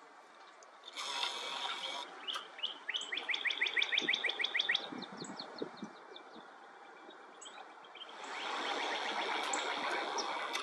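Wild birds chirping, with one rapid trill of short descending notes about three to five seconds in. A steady hiss swells briefly about a second in and again for the last two seconds.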